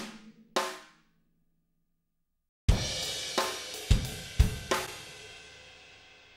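EZdrummer sampled drum kit played back through the software: one drum hit near the start, then silence for nearly two seconds. Then a short drum phrase begins with a loud hit and a ringing cymbal that fades out, with four more hits about half a second apart, as the snare notes, just moved to the rim shot sound, are heard.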